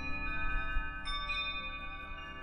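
Short musical logo jingle of high, ringing chime-like notes that overlap and sustain, with new notes entering about half a second and a second in.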